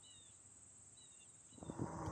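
Faint, short high chirps of crickets, spaced about a second apart, over a steady high hiss. Near the end a rush of wind and road noise fades in.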